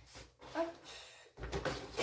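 Faint handling sounds from a small box of markers being moved off the table: soft knocks and rustling about a second and a half in.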